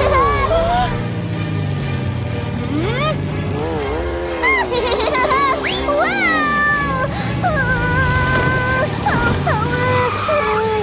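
Cartoon character voices making wordless exclamations and straining noises, gliding up and down in pitch, over background music and a go-kart engine sound effect.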